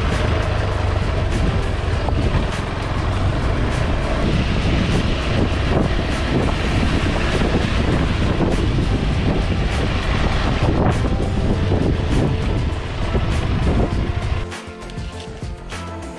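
KTM 390 Adventure's single-cylinder engine running on a dirt trail, with wind buffeting the helmet microphone and background music laid over it. The engine and wind noise drop away near the end.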